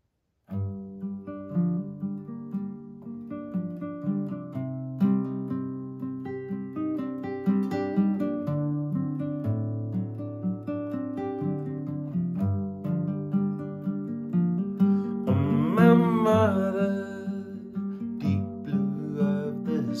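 Nylon-string acoustic guitar fingerpicking the song's opening chord sequence in G minor (Gm, Cm, D7, Gm), note by note in a steady rhythm. A man's singing voice comes in about three-quarters of the way through, over the guitar.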